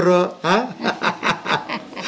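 An elderly woman chuckling in a run of short laughs, just after a few spoken words.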